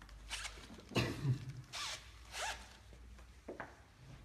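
A watercolour brush scrubbing and mixing paint on a plastic palette, in about five short rasping strokes. There is a heavier bump about a second in.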